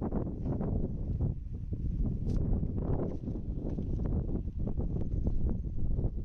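Wind buffeting a phone's microphone: a gusty, uneven low rumble that rises and falls throughout.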